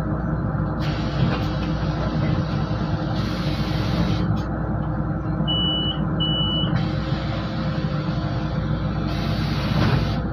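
Solaris Urbino 12 city bus idling while stationary, heard from inside, with a steady engine hum. Two stretches of air hiss come from the bus's air system, and between them, about five and a half seconds in, two short high beeps sound, typical of the door-closing warning.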